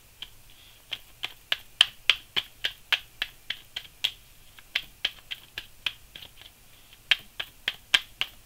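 A tarot deck being shuffled by hand: a sharp snap of cards about three or four times a second, sparse in the first second and steady after that.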